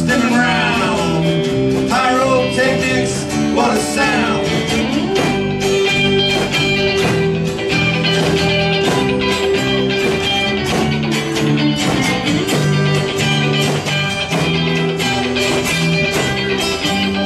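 Live band playing: guitars, bass guitar and drums, with bending lead notes over the first few seconds and then steady held chords.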